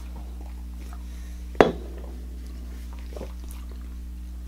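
A stemmed glass of beer set down on a wooden table: one sharp knock about one and a half seconds in, with a fainter tap later, over a steady low electrical hum.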